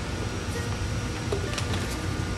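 Steady low room hum, with a couple of faint clicks from a plastic press-type water purifier bottle being handled, about a second and a half in.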